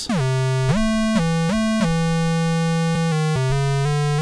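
Surge software synthesizer playing a line of sustained notes one at a time, each note gliding in pitch into the next with portamento set to about 0.13 s. About three seconds in the notes become shorter and quicker.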